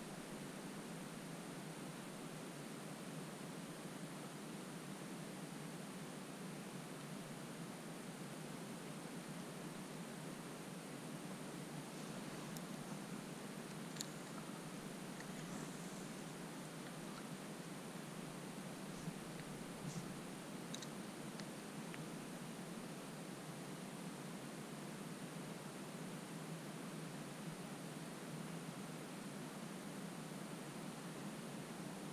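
Faint steady hiss with a few soft clicks and ticks around the middle, from handling a spinning rod and tackle.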